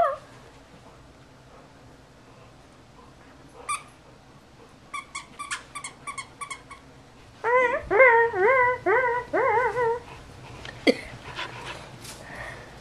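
A dog whining: first a few short, high yips, then a string of wavering whines that rise and fall in pitch, repeated several times over about two and a half seconds.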